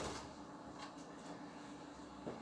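Quiet indoor room tone with a faint steady hum and a few soft, faint taps.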